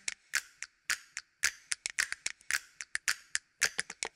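Typing sound effect: a rapid, irregular run of sharp key clicks, about six a second.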